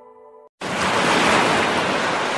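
A fading sustained music chord, a brief dead silence, then about half a second in a sudden loud, steady rush of surf-like noise cuts in: the sound of ocean waves in the anime scene's soundtrack.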